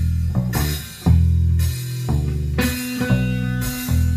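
Blues band playing an instrumental passage on electric guitar, bass guitar and drums, with heavy bass notes changing about once a second and cymbal crashes on the accents.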